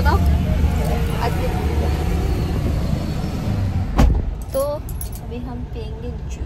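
Low, steady rumble of a moving car heard from inside the cabin, with a single sharp thump about four seconds in.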